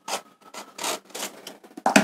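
Cardboard smartphone box being handled and slid against its paper sleeve and a plastic mailer: a string of short, irregular rubbing and scraping sounds, the loudest near the end.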